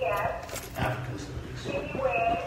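Indistinct speech, too low to make out, in short snatches at the start and just under a second in.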